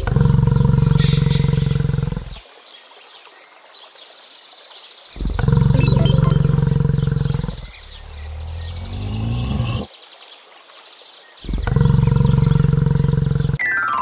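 A low, rough animal call played as the sound of a yak, heard three times, each call about two seconds long. Faint background sound fills the gaps, and a quick falling glide comes near the end.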